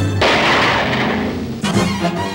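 Held music chord broken off by a sudden loud crash that fades over about a second and a half and is cut off short, with orchestral music starting near the end.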